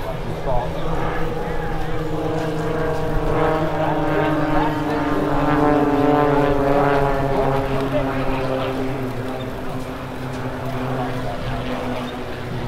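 Propeller aircraft flying past, its engine drone a steady hum of several tones that swells to its loudest about halfway through while the pitch slowly falls as it passes.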